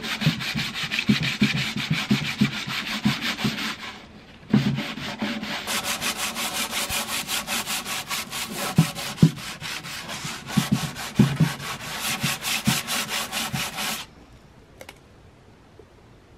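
Hand sanding a painted wooden cabinet top with a sanding sponge, quick back-and-forth scraping strokes scuffing the old purple paint before repainting. The strokes pause briefly about four seconds in, then run on until they stop about two seconds before the end.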